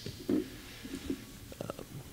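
A brief hesitant "um" from a man at a microphone, then a quiet pause in a large hall with faint low noises and a few small clicks near the end.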